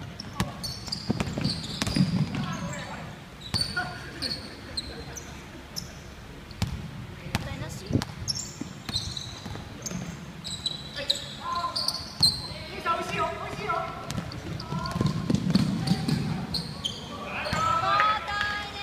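A basketball being dribbled and bouncing on a wooden gym floor, with sharp sneaker squeaks. Players' voices call out, most of all in the second half.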